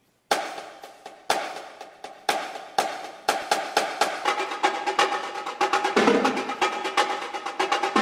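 Marching drumline playing: single sharp drum strokes about a second apart, quickening after a few seconds into a dense, steady snare-led rhythm that grows fuller and lower about six seconds in.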